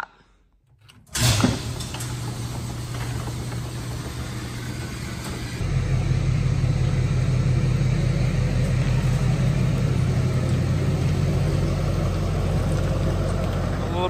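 Pickup truck engine comes in abruptly about a second in and runs with a steady low hum. It gets louder about five and a half seconds in as the truck pulls the fuel trailer.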